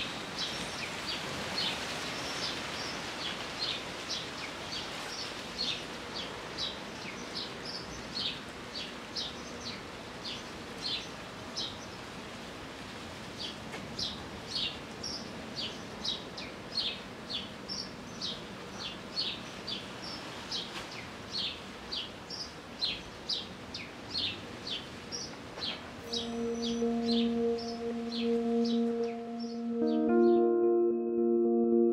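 Birds chirping, short high calls repeating about twice a second over steady outdoor background noise. About 26 s in, ambient music with long held tones comes in.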